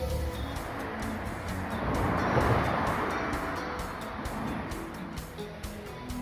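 Background music over the noise of a train running past at the station, swelling to its loudest about two and a half seconds in and then fading away.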